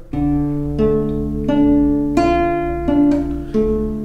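Acoustic guitar fingerpicking a D minor chord one string at a time in a slow, even six-note pattern. The open fourth-string bass comes first, then the third, second, first, second and third strings, each note left ringing.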